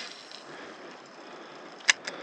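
A cast with a telescopic fishing rod: a brief swish at the start, a faint hiss as the line pays out, then a single sharp reel click near the end.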